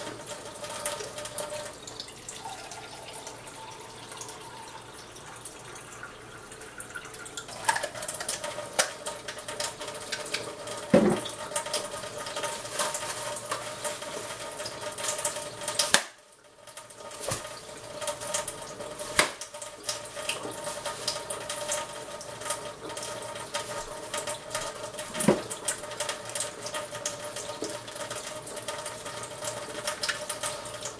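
Kitchen faucet running a thin, steady stream of water into a stainless steel sink, with a few sharp knocks now and then. The sound drops out briefly about halfway through.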